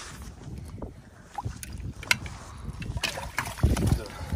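Icy water sloshing and splashing in a tire stock tank, with ice pieces knocking, as a hand works in the water and pulls up the failed float valve. Wind buffets the microphone, with a loud gust near the end.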